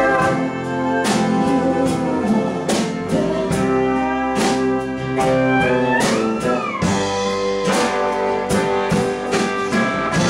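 Live country-rock band playing an instrumental passage: electric and acoustic guitars, bass, fiddle and pedal steel over a steady drum beat. About six seconds in, one note bends up and back down.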